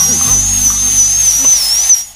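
High-pitched whine of a dental drill, wavering up and down in pitch, that stops suddenly at the end.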